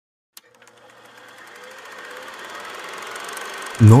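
Old film projector sound effect: rapid, even mechanical clicking over a hiss, starting with a single click and growing steadily louder.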